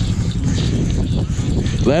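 Beta dirt bike engine idling with a steady, rough low rumble while the bike stands still.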